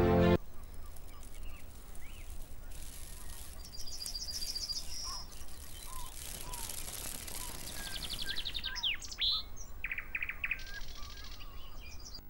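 Theme music cuts off half a second in. It gives way to birdsong over a soft outdoor background hiss: several rapid trilled call series and scattered short chirps.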